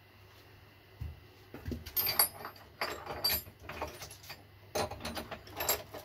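Small metal tools and parts clinking and clattering as they are handled and rummaged through by hand. An irregular run of knocks and jingles with some ringing begins about a second in and grows louder toward the end.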